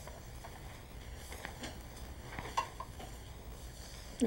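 Faint handling noises: a few soft clicks and rustles as a pair of eyeglasses is unfolded and put on and a sheet of paper is handled close to a clip-on microphone, the sharpest click about two and a half seconds in. A steady low hum runs underneath.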